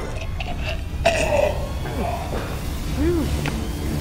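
A man gagging and retching at a foul smell, the loudest heave about a second in and a shorter grunt near the end, over a steady low hum.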